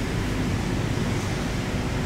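Steady low rumble and hiss of a 2016 Toyota Land Cruiser's 5.7-litre V8 idling, heard at the rear of the vehicle by the exhaust.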